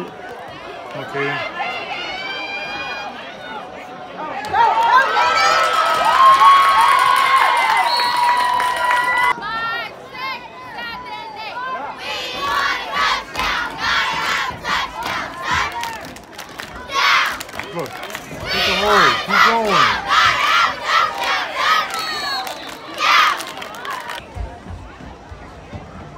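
Spectators at a youth football game cheering and yelling, with many high-pitched shouting voices; the loudest cheering comes about five to nine seconds in, then bursts of separate shouts and cheers follow.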